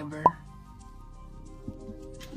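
A single short plop with a quick rising pitch about a quarter second in, followed by soft background music.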